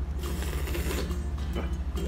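Steady low, rapidly throbbing hum of a ship's engine, with the wet chewing of a bite of boiled duck egg over it in the first second.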